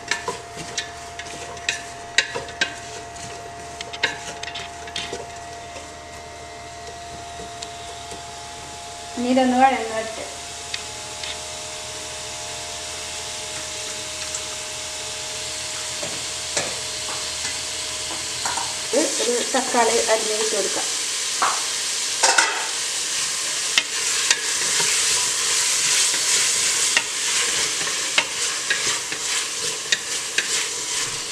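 Onions and green chillies frying in an open pressure cooker, stirred with a wooden spatula that scrapes and knocks against the metal pot. About two-thirds of the way in, the sizzle turns much louder and hissier as tomatoes join the pan.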